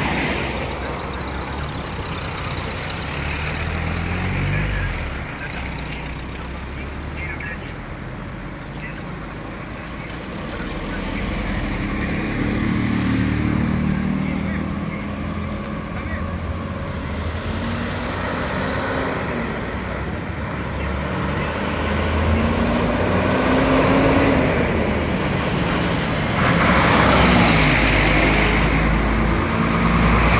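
Road traffic passing close by: car and motorcycle engines come and go, their pitch rising and falling as each one passes, over a steady low rumble. Near the end a heavy diesel dump truck passes, the loudest sound.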